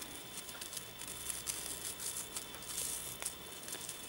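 Faint rustling and soft ticks of ribbon being handled and pulled as a bow is tied by hand.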